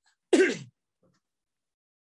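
A man clears his throat once, briefly, about a third of a second in.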